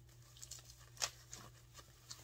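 Faint rustling and crinkling of a plastic bubble-wrap sleeve being handled, with a few light crackles, the sharpest about a second in, over a steady low hum.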